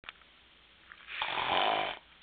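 A person mimicking a snore as the voice of a sleeping toy character: one long, rough snore beginning about a second in.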